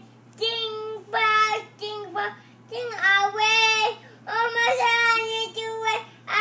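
A young child singing in a high voice: a string of held notes at a fairly steady pitch, each about half a second to a second long, with short breaths between them.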